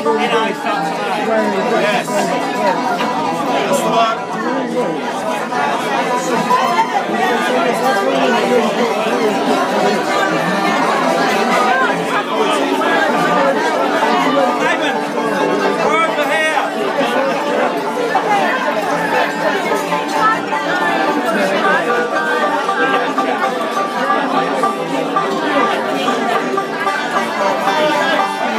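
Many voices chattering at once in a crowded room, with a guitar being tuned and a few faint steady instrument notes under the talk.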